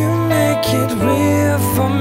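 Live pop-soul band music: a melody line that bends and glides in pitch over a steady bass.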